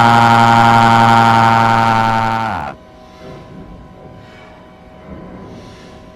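Pitch-shifted, layered 'G-Major' edit of a VHS logo jingle, held as one loud droning chord that slides down in pitch and cuts off about two and a half seconds in. Only faint sound remains after it.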